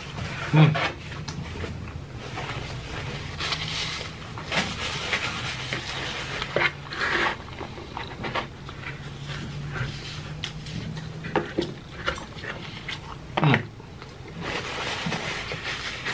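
Close-miked chewing and lip-smacking of a mouthful of cheese pizza, with breathing through the nose and scattered sharp wet mouth clicks. A low steady hum sits underneath and stops about three-quarters of the way through.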